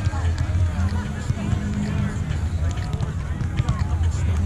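Outdoor voices of players and people around beach volleyball courts, chattering and calling, over a steady low hum. A faint knock comes near the end as the volleyball is hit.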